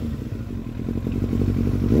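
1997 Kawasaki ZX-7R's inline-four engine idling steadily, heard through a Hawk aftermarket silencer.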